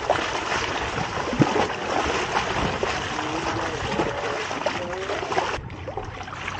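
Seawater splashing and sloshing against a boat's side, stirred by a sailfish held at the surface by hand. The splashing drops away abruptly near the end.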